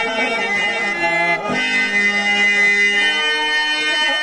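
Harmonium playing long held notes under a man singing a Telugu stage-drama verse (padyam), the reedy chords changing about a second and a half in.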